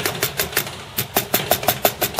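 Plastic keys of a Commodore Amiga A500 keyboard clacking in a fast, even run of about six or seven clicks a second, with a short break about a second in. The keyboard is being tapped and typed on to test that, after a new controller chip was fitted, the intermittent flashing-Caps-Lock fault no longer appears.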